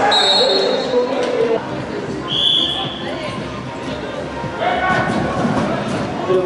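Two short whistle blasts, the first about a second long at the start and the second, slightly lower and shorter, about two and a half seconds in, over the thudding of galloping horses' hooves on the arena's sand footing.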